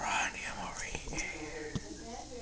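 A person whispering, loudest in a breathy burst at the very start.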